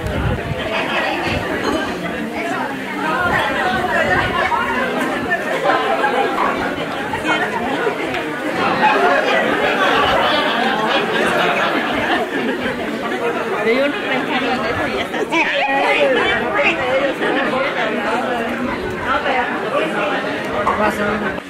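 Many people talking at once: a steady hubbub of overlapping conversation from a seated crowd, with no single voice standing out.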